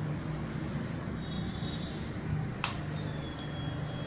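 A single sharp click about two and a half seconds in, over a faint steady hum, with the motorcycle's engine not running.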